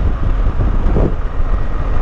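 Wind rushing over the microphone with the steady rumble of a BMW R 1200 GS Adventure motorcycle being ridden along a road, with a brief swell in the noise about halfway through.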